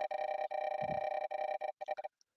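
Online spinning name-picker wheel's ticking sound effect: the ticks come so fast they run together into a steady tone, then break into separate ticks as the wheel slows near the end.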